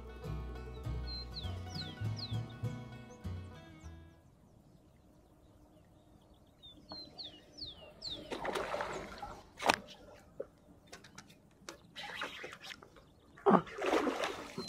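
Background music for the first four seconds, then small birds chirping over calm water and scattered noises in the water. Near the end comes a loud, sudden splash as a traíra strikes the surface lure beside the kayak.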